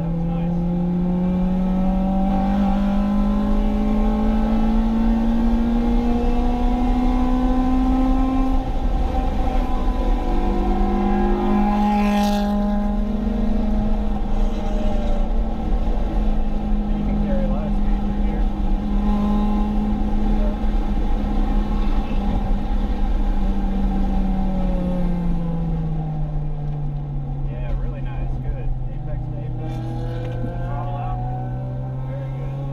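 Acura RSX Type-S's K20 2.0-litre four-cylinder engine pulling hard on track, heard from inside the cabin: its pitch climbs for about eight seconds, drops with an upshift, climbs again and holds high, then falls away over the last few seconds as the car slows. A brief rushing noise cuts in about twelve seconds in.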